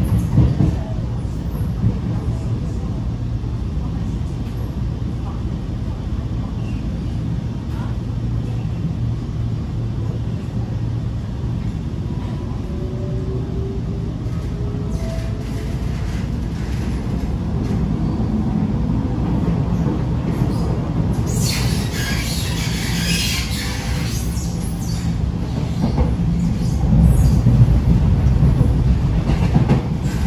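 Cabin noise of an SMRT R151 metro train running: a steady rumble of wheels on track. About twelve to sixteen seconds in, the faint whine of its SiC-VVVF traction drive (Alstom MITrac TC 1500) rises in pitch as the train gathers speed. A brief high hiss comes about two-thirds of the way through, and the rumble grows louder near the end.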